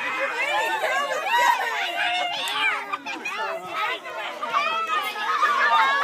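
Several children's voices chattering and calling out at once, overlapping so that no single speaker stands out.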